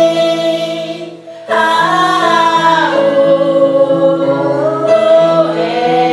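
A woman singing a slow ballad in long held notes over an instrumental backing track, with a short break about a second and a half in before the next phrase begins.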